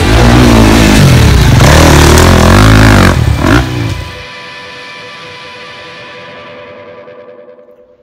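Rock music with distorted electric guitar, loud for about three seconds, then ending on a held chord that rings and fades out.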